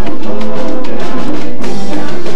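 A live salsa band playing loud, with drums and hand percussion such as congas to the fore over sustained instrumental notes.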